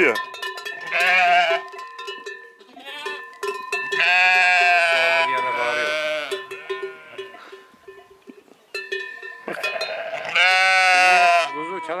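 Sheep bleating: ewes and lambs calling for each other, with long, loud bleats about a second in, from about four to six seconds in, and again near the end. These are lambs still calling because they have not yet found their mothers. Beneath them is the steady ringing of the ewes' neck bells, by which the lambs learn to find their mothers.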